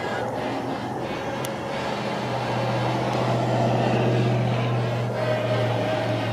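A low, steady engine hum, as of a passing vehicle, that grows louder through the middle and falls away at the end.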